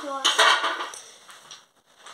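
Small wooden toy blocks clattering against one another, a short burst of clicks in the first second that dies away.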